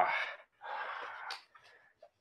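A person's breathy laugh trailing off, followed about half a second later by a longer exhale.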